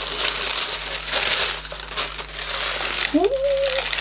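Tissue paper crinkling and rustling as it is unsealed and folded back inside a cardboard box, an irregular rustle lasting about three seconds.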